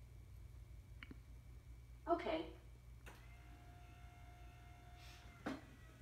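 A short, faint voice reply about two seconds in. Then the electric motor of a voice-controlled home hospital bed runs with a faint, steady whine for about two and a half seconds, raising the head section, and stops with a soft knock.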